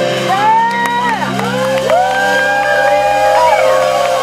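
A live band's final sustained chord ringing out while the audience whoops and cheers, with loud rising-and-falling shouts over the held chord.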